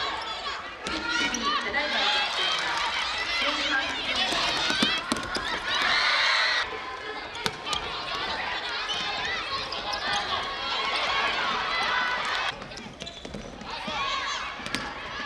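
Indoor futsal game on a hardwood court: players' voices calling out, with sharp knocks of the ball being kicked and bouncing on the wooden floor. The voices grow louder for about a second around six seconds in.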